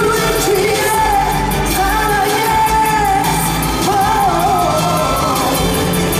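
Live pop performance with a male lead singer holding long notes with a slight waver in pitch, over a dance track with a steady beat.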